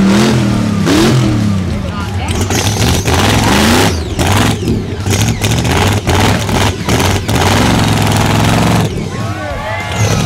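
Rock bouncer buggy's engine revving hard in repeated bursts, its pitch rising and falling, as the buggy claws its way out of a frozen mud hole. Dense rattling and impact noise from the tires and chassis runs through the middle of the stretch. Spectators' voices can be heard behind it.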